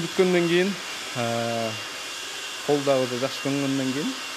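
Electric hair clippers running with a steady high hum, with a voice over them.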